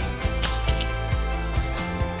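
Winner Spirit Miracle 201 swing trainer giving a sharp click about half a second in, early in the downswing. The click comes before the impact zone, the sign of a release that is too fast, with the hands starting the downswing. Background music plays throughout.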